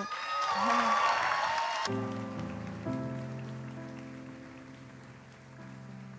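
Audience applause with a cheer for about two seconds, cut off abruptly. Then a keyboard plays slow, sustained chords that change once and slowly fade.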